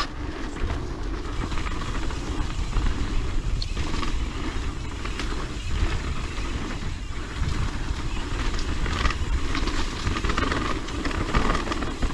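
Propain Tyee full-suspension mountain bike being ridden fast on a dirt trail: knobby tyres rolling and crunching over dirt and dry leaves, with small chain and frame rattles. Wind rushes over the camera's microphone, giving a constant uneven rumble.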